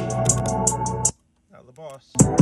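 Electronic music with a held bass note and quick hi-hat ticks, played loud through 6x9 coaxial motorcycle speakers on a test bench. It cuts out abruptly about a second in, and a brief wavering voice snippet follows just before the end.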